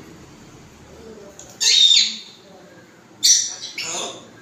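African grey parrot giving two loud, high-pitched calls about a second and a half apart, the first ending in a falling sweep.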